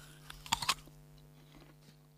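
Bites into hard, crisp green apples: two sharp crunches about half a second in, then quieter chewing.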